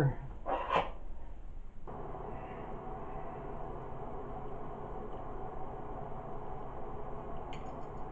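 A steady hum of several held tones that sets in abruptly about two seconds in, with a few light clicks near the end as dried electrode powder clumps are handled over a glass dish.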